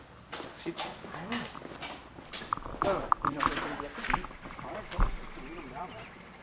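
Quiet, indistinct voices in short snatches, with a few sharp clicks and knocks around the middle.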